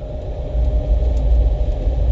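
Low steady rumble of a running vehicle, with a faint steady hum above it.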